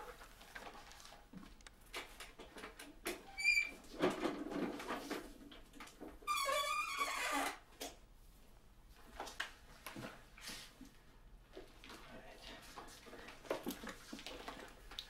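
Quiet room with small handling noises: heavy gloves being pulled on, a brief squeak a few seconds in, then a longer squealing scrape about halfway through as a chair is dragged on the floor and someone sits down.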